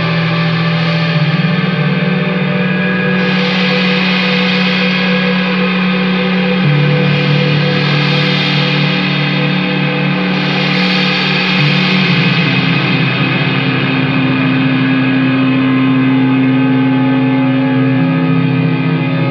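Stoner/doom metal: heavily distorted electric guitars with effects holding long, slow sustained chords that move to a new chord every few seconds, with bright washes swelling and fading over them.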